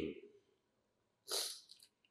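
A man's spoken word trailing off, then near silence broken by one short, sharp intake of breath close to the microphone about a second and a half in.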